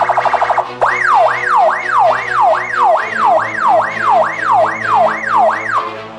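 Police siren over background music: a rapid warbling tone for the first half second, then a fast up-and-down yelp about three sweeps a second, which stops just before the end.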